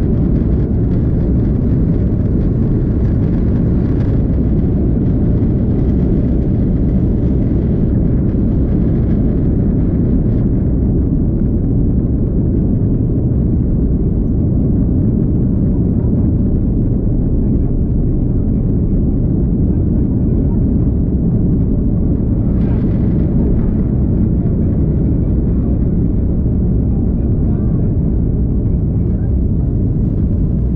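Inside the cabin of an Airbus A330-200 on its takeoff roll and liftoff: the General Electric CF6-80E1 turbofans at takeoff thrust make a loud, steady, deep rumble, mixed with runway rumble as the wheels roll.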